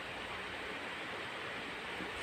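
Steady, even hiss of running room machinery: a bedside breathing machine and the air conditioner.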